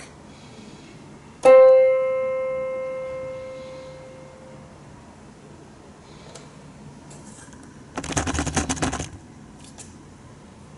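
A single note on a digital piano, middle C, struck once and left to sustain, dying away over about three seconds. Near the end comes about a second of rustling handling noise.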